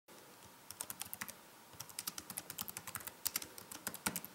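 Computer keyboard being typed on, with crisp individual keystroke clicks. A short run of keystrokes comes first, then a brief pause, then a longer, faster run.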